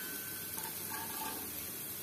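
Food frying in oil in a pan, a steady sizzle.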